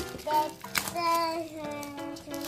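Music with a child singing a melody.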